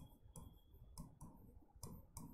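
Faint, quick taps and short strokes of a pen or chalk writing on a board, about three a second, as words are written out.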